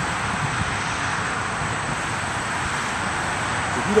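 Steady road traffic noise: an even rushing hiss of tyres and engines, with no separate knocks or thumps.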